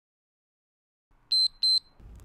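Two short, high electronic beeps about a third of a second apart, near the end. They are a workout interval timer signalling the end of a 35-second exercise period.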